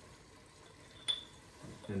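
A single light clink about a second in, a teaspoon knocking against the chili powder container as a spoonful is measured out. A man's voice starts just before the end.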